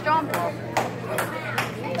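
A few scattered hand claps, sharp and irregular, a few per second, over murmured voices in a large room.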